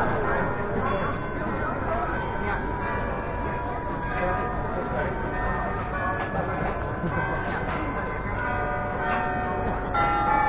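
Church bells of St. Bavo's (the Grote Kerk) ringing, several long overlapping tones at different pitches, over the chatter of a crowd.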